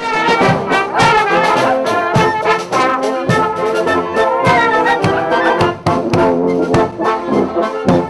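Marching brass band playing, with sousaphone and other brass horns over a steady drum beat.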